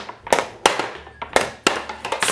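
Balls of a portable Skee-Ball game knocking against the ramp and target rings and rolling to the return: four sharp knocks.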